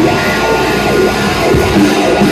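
Live rock band playing loud, with electric guitars and a drum kit.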